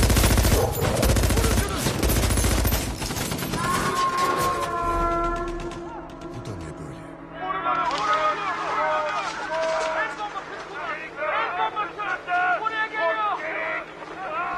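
Rapid, continuous automatic gunfire from several rifles for about the first six seconds, then dying away. After it, sustained music tones and indistinct voices.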